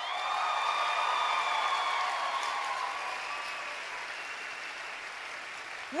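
Audience applauding and cheering. It starts at once, is loudest for the first couple of seconds, then slowly dies down.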